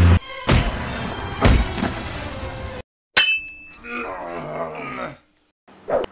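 Fight-scene soundtrack: music punctuated by sharp hits, about half a second and a second and a half in. After a sudden cut to silence, a single metallic clang rings briefly, like sword blades striking, and the music picks up again before breaking off near the end.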